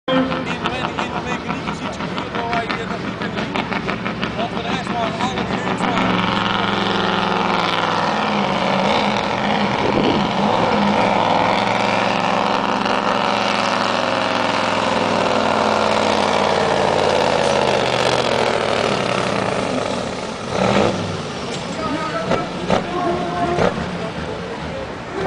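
Diesel engine of the Renault pulling truck running at full throttle through a long, steady pull of the sled. The engine picks up about six seconds in, holds loud and steady, and eases off at about twenty seconds.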